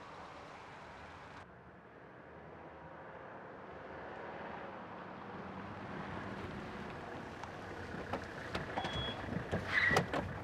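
An older Mercedes-Benz sedan driving up and coming to a stop, its engine and tyres growing slowly louder over several seconds. Near the end come sharp clicks and knocks as a car door is opened.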